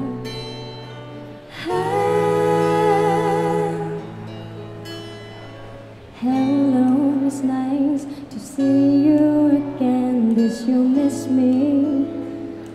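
Live acoustic song: a female voice sings held, wavering notes in two phrases over acoustic guitar accompaniment.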